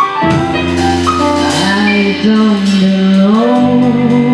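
Band music in a jazzy funk style: drum kit hits over a steady bass note, with long held melody notes that bend and slide in pitch.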